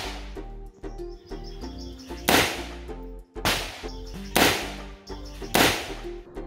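Four single rifle shots from an AR-15/M16-pattern rifle, fired about a second apart in the second half, each a sharp crack with a short ringing tail. Background music plays underneath.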